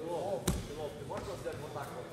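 A single dull thud on the judo mat about half a second in, over indistinct voices in the hall.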